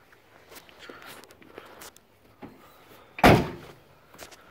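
Door of a first-generation Toyota 4Runner slammed shut once, about three seconds in, with a short ringing decay. Before it come faint rustles and small knocks.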